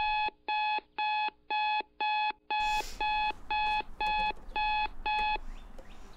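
Electronic alarm clock beeping: short, identical beeps about two a second, which stop abruptly near the end.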